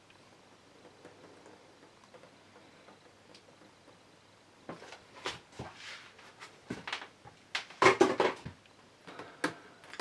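Faint room tone, then from about five seconds in a run of irregular knocks and clicks, loudest about eight seconds in, as a paint-covered vinyl LP record is handled and picked up to tilt off the excess paint.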